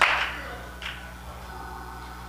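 A single sharp smack right at the start, trailing off in the hall's echo over about half a second, with a faint second tap just under a second in; then quiet room tone over a steady low hum.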